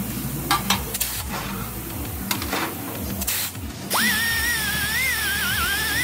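Pneumatic air grinder spinning up sharply about four seconds in, then running with a high whine whose pitch wavers as it grinds steel, throwing sparks. Before it, light clatter of metal being handled.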